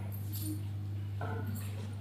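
Steady low electrical hum from a lecture-hall microphone and sound system, with a couple of faint, brief sounds about half a second and a second and a half in.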